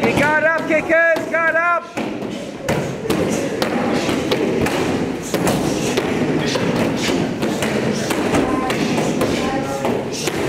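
Rapid, irregular thuds of kicks landing on padded kick shields, over the hubbub of many people training in a hall with voices in the background. In the first two seconds a quick run of high-pitched chirps sounds over the thuds.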